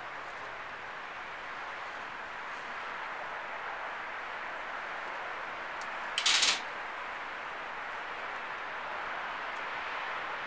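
Steady outdoor hiss, with one short clatter about six seconds in as a lighter is set down on the patio table.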